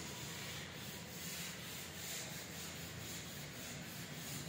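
Faint rubbing of a duster across a chalkboard in repeated strokes, wiping off chalk writing.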